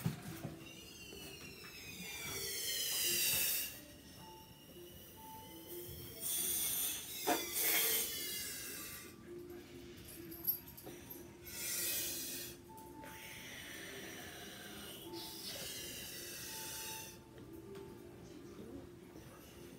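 A child blowing up a tiny Wubble Bubble ball by mouth: four long breaths blown into it, about four seconds apart. Each breath carries high squeaky tones that fall in pitch.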